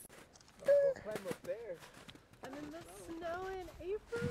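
Indistinct voices of other people talking, with no clear words.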